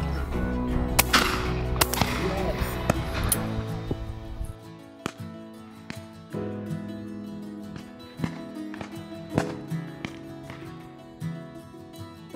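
Background music with sustained notes, and two or three loud shotgun shots ringing out over it in the first few seconds. Fainter sharp cracks follow every second or two.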